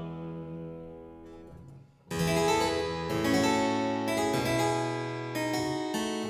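Harpsichord playing alone: a chord dies away to a brief pause about two seconds in, then a new phrase of crisply plucked chords and notes begins.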